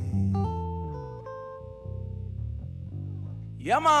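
Guitars playing the closing notes of a song, single plucked notes ringing and fading over low held notes. Near the end a man shouts "Come on!"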